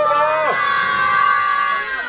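An eagle giving one long, drawn-out call, level in pitch, that stops near the end.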